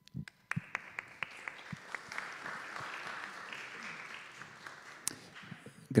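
Small audience applauding: the clapping starts about half a second in, holds for several seconds and dies away just before the end. A couple of handling knocks on the microphone come just before it starts.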